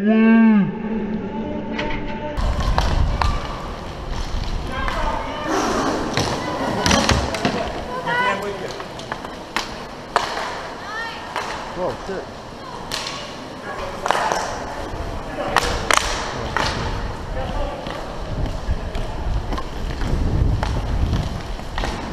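Roller hockey play heard from a skating player's helmet: sharp clacks of sticks and puck striking, scattered irregularly through the whole stretch, over a low rumble of inline skates and wind on the microphone from about two seconds in. Players shout now and then in the distance.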